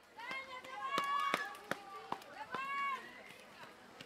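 Spectators' high-pitched voices shouting to runners, in two calls, one in the first second and one near the end of the third, over the sharp slap of running footsteps on asphalt.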